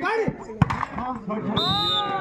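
Volleyball rally: players shouting, a sharp smack of a hand on the ball about halfway through, then a short high-pitched referee's whistle blast near the end.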